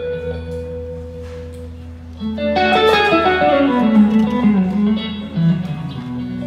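Live guitar, bass and drums trio: the electric guitar holds notes over a steady bass line, then about two and a half seconds in breaks into a louder, fast run of notes that falls in pitch, with light drums underneath.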